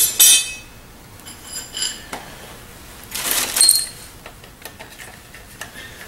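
Metal hand tools clinking and rattling against each other in three short bursts, one at the start, one about one and a half seconds in and one about three and a half seconds in, each with a brief high ring.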